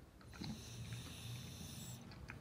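French bulldog breathing noisily close by, a low rasping sound through its short, flat nose that picks up again about half a second in, with a few faint clicks.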